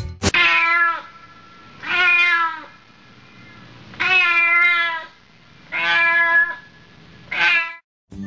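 A cat meowing five times, each meow drawn out for just under a second, about one every one and a half to two seconds.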